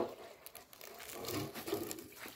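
Faint, irregular scraping and rustling as a rubber feeding trough is gripped and shifted on dry dirt, with a slightly louder scrape a little past the middle.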